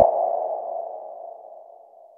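Electronic outro sound effect: a single mid-pitched ping-like tone that swells in, peaks at the start, then fades away slowly over about two seconds.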